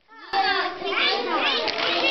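A group of children shouting and squealing at play, many high voices overlapping, starting abruptly after a brief silent gap at the very start.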